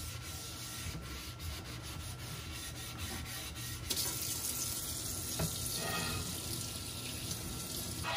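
A sponge scrubbing a soapy tray in a stainless steel sink with repeated rubbing strokes. About four seconds in, a faucet sprayer turns on and water runs steadily onto the tray and sink.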